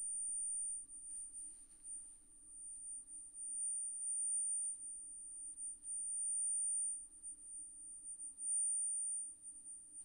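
Bose Bluetooth speaker playing a steady, high-pitched sine tone of around 9,000 hertz. Its loudness swells and fades several times as the speaker is turned toward and away from the microphone. At this high frequency the speaker beams its sound forward instead of acting as a point source.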